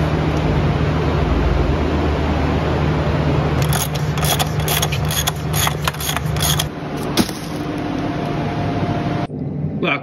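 A workshop heater runs with a steady hum. From about a third of the way in, a ratchet clicks in quick runs as it turns the oil sensor fitting on the oil filter housing of the BMW E30's engine.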